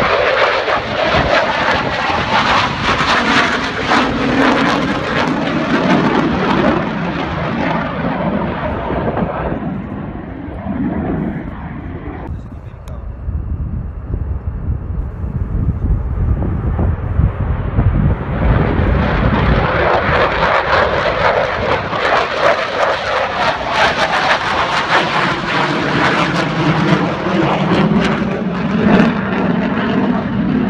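Fighter jet engine noise: the loud noise of an F-16 passing fades over about ten seconds to a quieter low sound. Then a second jet's noise builds up again and stays loud through the second half.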